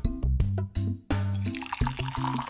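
Backing music with a steady beat; about a second in, liquid starts pouring from a vacuum flask into its cup, a trickling splash that carries on under the music.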